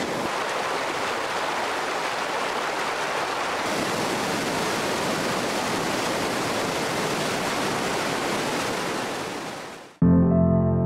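Swollen, muddy floodwater rushing in a steady, loud wash of noise. It grows brighter and hissier about four seconds in, and fades out just before the end.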